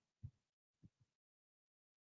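Near silence: room tone in a pause between sentences, with two faint low thuds in the first second.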